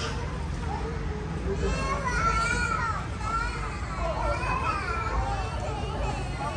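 Several children's voices talking and calling out, with a steady low background rumble.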